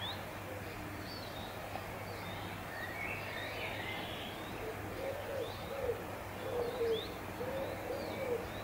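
Garden birdsong: a small bird giving short high chirps every second or so, and from about halfway through a pigeon cooing in a run of low notes.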